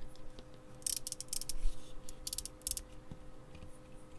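Scratchy clicks and scrapes of hands handling a small Eurorack synth module: a plastic D-shaft knob is being eased along its shaft and the aluminium-panelled module is turned over. The noises come in two short clusters, about a second in and again just past two seconds.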